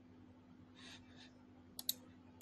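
Two quick, sharp clicks close together near the end, over quiet room tone with a low steady hum. A soft hiss comes about a second in.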